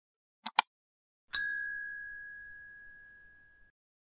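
Subscribe-button animation sound effects: a quick double mouse click about half a second in, then a single bell ding that rings out and fades over about two seconds.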